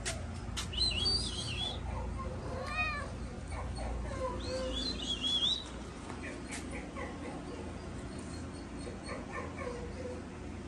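Cat vocalizing: short high chirping calls about a second in and again around five seconds, with a brief meow near the middle, over a steady low hum.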